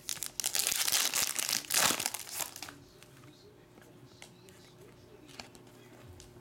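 Foil wrapper of a 2020 Panini Select soccer card pack torn open and crinkled by hand for about two and a half seconds, then a few faint ticks and rustles as the cards are handled.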